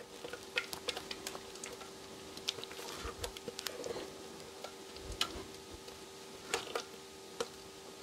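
Faint, scattered small clicks and a few soft plops as thick gorgonzola cream is tipped out of a Thermomix's steel mixing bowl onto sliced potatoes in a glass baking dish. A faint steady hum runs underneath.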